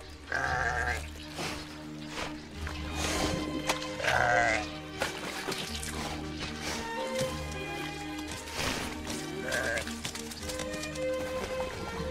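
A ram bleating three short times over a steady orchestral film score.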